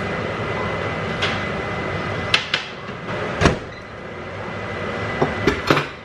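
A metal baking sheet of cinnamon rolls being taken out of an electric oven and set on the stovetop, with the oven door handled: a few separate knocks and clanks, the sharpest about three and a half seconds in, and a quick cluster of clicks near the end.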